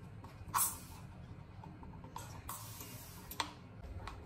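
Trigger-pump continuous-mist spray bottle spraying water: a short hiss of mist about half a second in, then a longer hiss of about a second a little past the two-second mark.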